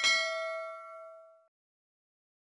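A notification-bell sound effect: one bright bell ding that rings and fades out over about a second and a half.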